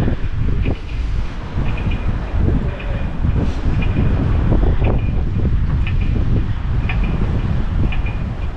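Wind buffeting the camera's microphone: a heavy, gusting low rumble that rises and falls.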